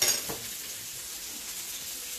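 Kitchen handling noise at a bowl: a brief scrape right at the start, then only a steady faint hiss.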